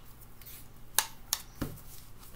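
Cards being handled and tapped on a cloth-covered table: three sharp clicks in quick succession, the first and loudest about halfway through.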